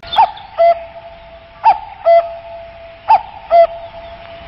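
A two-note falling hoot, a higher note and then a lower one, played three times about a second and a half apart over a steady held tone: a hoot sound effect.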